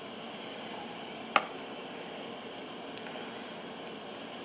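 Steady low hiss from a gas burner heating gravy in a cast-iron skillet, with one sharp click about a second and a half in.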